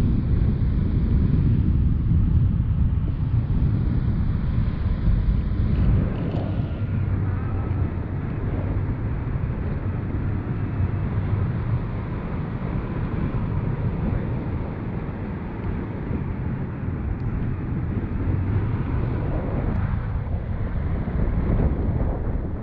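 Wind buffeting an action camera's microphone on a selfie stick in flight under a tandem paraglider: a steady low rumble, a little louder in the first six seconds.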